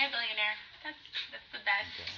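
Two women's voices talking and laughing in short, broken bursts.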